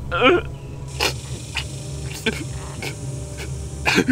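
A badly wounded man's pained vocalising: a short strained cry, then quick sharp gasping breaths about every half second, and another cry near the end.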